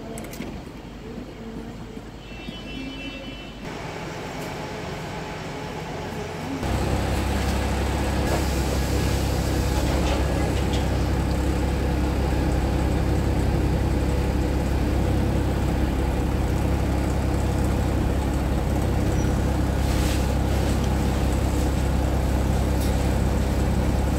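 Diesel engine of a Wright-bodied Volvo single-deck bus running, heard from inside the saloon: a steady low drone that sets in suddenly about seven seconds in, after quieter sound before.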